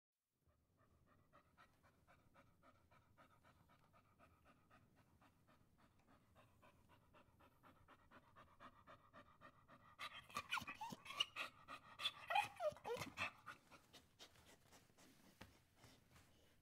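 A black-and-tan shepherd-type dog panting faintly and steadily, then from about ten seconds in breaking into a louder stretch of high whines that slide down in pitch among the panting breaths, before settling back to faint panting.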